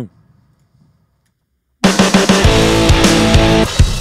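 Near silence for about the first two seconds, then playback of a loud, drum-heavy rock mix starts abruptly: the producer's own mix heard with the mastering chain switched on, which makes it a lot louder.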